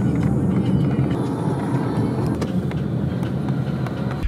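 Car engine and road noise heard from inside the cabin of a car moving in slow traffic, a steady low-pitched noise.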